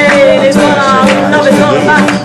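A woman singing, her voice gliding through held notes, over two acoustic guitars.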